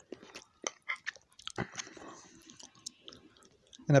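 A person chewing a mouthful of pasta close to the microphone: soft, irregular wet mouth clicks and smacks, with a few sharper clicks among them.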